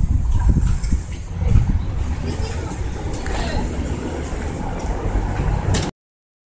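Indistinct voices over a steady low rumble, recorded outdoors on a phone; the sound cuts off abruptly just before the end.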